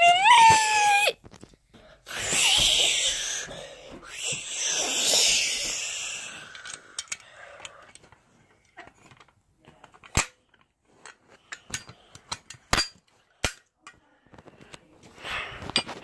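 Rustling handling noise for a few seconds, then scattered sharp clicks as a small plastic toy fire alarm pull station is handled.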